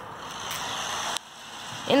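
Cheap 1/24 scale toy RC truck running at full throttle across a concrete floor, its small electric motor and plastic gears whirring with the tyres rolling; the sound cuts off suddenly a little over a second in, then builds again, as the on/off throttle is released and reapplied.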